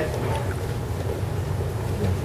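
Steady low hum and rumble of room noise in a pause between words.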